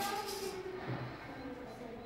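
Quiet, indistinct voices talking, with no clear words.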